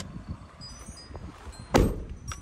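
Front passenger door of a Ford Transit van being shut, one loud heavy thump near the end, over a low rumble of wind on the microphone.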